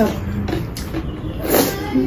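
Eating sounds: chewing and the light clicks of chopsticks on plates, with a short crunchy noise about one and a half seconds in. A brief hum of voice trails off at the start.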